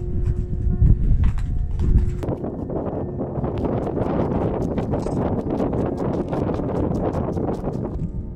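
Footsteps crunching in snow, a dense run of crisp crackles starting about two seconds in. Before that, a low wind rumble on the microphone under soft background music.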